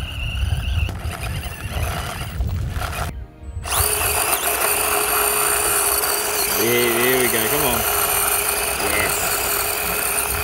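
Small brushed electric motor and gear drivetrain of an Axial SCX24 Jeep Gladiator 1/24-scale RC crawler whining steadily as it crawls up a steep rocky slope. In the first few seconds the sound is low rumbling noise; a brief gap about three seconds in is followed by a clearer, steady whine.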